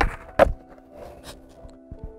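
Skateboard fakie ollie on asphalt: the tail pops sharply right at the start, and the board lands back on its wheels with a louder slap less than half a second later.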